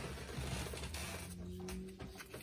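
Pokémon trading cards sliding and rubbing against each other as a small stack from a freshly opened booster pack is squared up and handled, a soft papery rustle. A faint steady low tone sounds in the second half.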